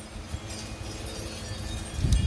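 Faint, scattered tinkling of wind chimes over a low rumble of wind on the microphone.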